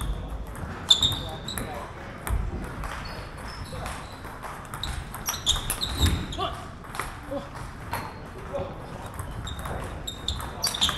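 Table tennis rally: a plastic ball clicking in quick succession off rubber-faced bats and the tabletop, with the clicks echoing in a large hall.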